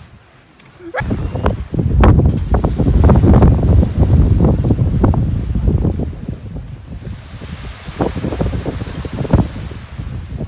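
Wind buffeting a phone microphone at the seashore, a loud, uneven low rumble that starts about a second in and eases off in the second half, with small waves washing onto the sand.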